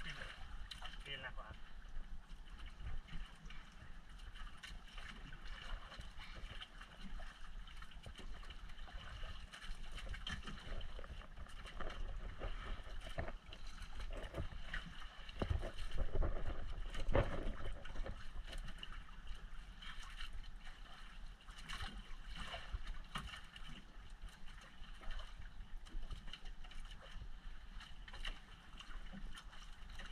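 Wind and water noise aboard a small outrigger boat at sea, over a steady low rumble. It gets louder for a few seconds about halfway through.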